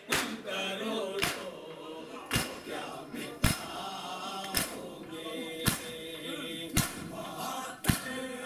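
A crowd of men beating their chests in unison with open hands (matam): a sharp collective slap about once a second, eight in all, keeping time to male voices chanting together.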